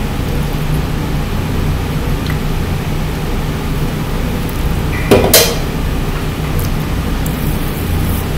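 A man drinking from an aluminium energy-drink can against a steady low room hum, with one short sharp sound about five seconds in.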